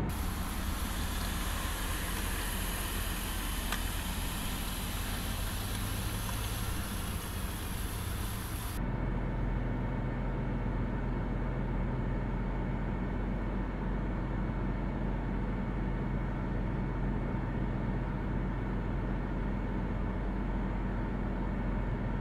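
Steady low drone and road noise inside a Mercedes-Benz truck cab as the truck drives. About nine seconds in the high hiss drops away abruptly, leaving the low drone.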